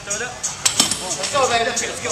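Indistinct voices talking, with a couple of sharp metallic clinks from the barbell and weight plates a little over half a second in.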